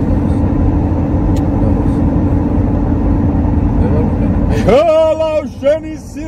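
Loud, steady rumble of a moving car heard from inside the cabin; near the end a man starts singing loudly in long held notes.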